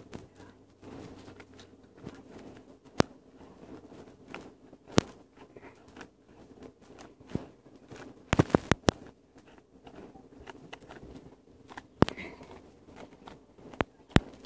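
A folded-paper origami flasher tessellation being worked by hand: soft paper rustling broken by sharp, crisp snaps of the creases, single ones every few seconds and a quick cluster of several a little past halfway.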